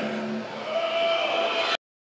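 Concert-hall audience and stage noise between songs, with a held tone in the middle; the sound cuts off suddenly shortly before the end.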